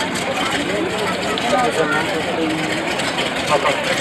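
Indistinct voices talking over a steady low engine hum.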